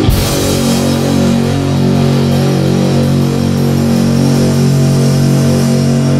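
Heavy metal band recording: a crash hit right at the start, then held low chords over drums with a steady cymbal wash.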